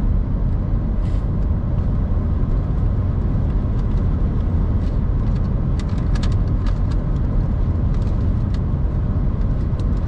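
Steady low road and tyre noise of a car driving at highway speed, heard from inside the cabin. A few faint clicks come about six seconds in.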